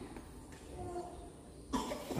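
Faint, distant voices murmuring in a large hall, then a sudden cough near the end.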